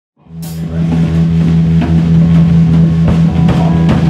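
Live rock band of drum kit, bass guitar and electric guitar playing an instrumental intro: drum hits over held low guitar and bass notes, fading in within the first second.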